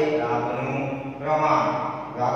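A man speaking in long, drawn-out syllables, with a short break about a second and a quarter in.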